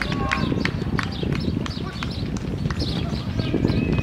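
Rapid, overlapping footfalls of a field of sprinters striking a synthetic running track as they race past, a dense patter of many feet at once.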